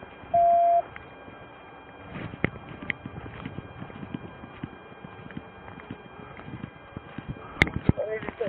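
A single steady electronic beep, about half a second long, shortly after the start, then scattered clicks and rustles of equipment handled close to the microphone, with one sharp click near the end.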